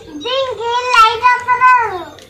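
A child's voice holding one long, high, drawn-out note, which dips in pitch and fades just before the end.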